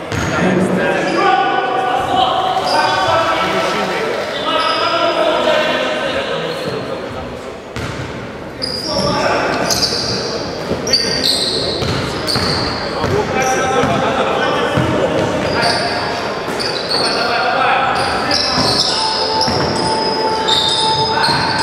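Basketball being dribbled on a wooden gym floor, with sneakers squeaking in short bursts as players move, in a large hall.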